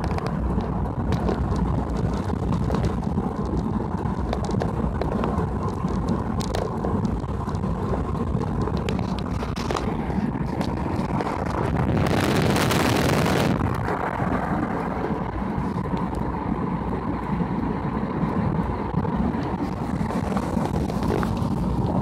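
Car driving along a road, with a steady rumble of engine and tyres heard from inside the cabin. Near the middle, a rush of wind on the microphone lasts about a second and a half.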